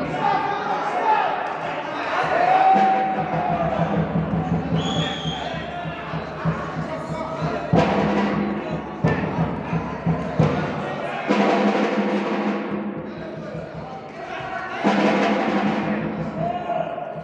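Boxing arena crowd and corners shouting during a bout, with sharp thumps now and then.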